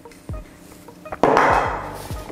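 A small knock, then a sudden clattering rattle of a bundle of dry spaghetti sticks being handled in a glass, a little over a second in, fading away.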